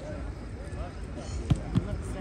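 Two sharp thuds of a football being kicked, about a quarter second apart, a second and a half in, over faint voices.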